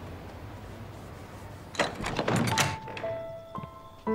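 Soft background music fades, and about two seconds in a quick cluster of knocks or thuds lasts under a second. A few held music tones follow, as new music starts near the end.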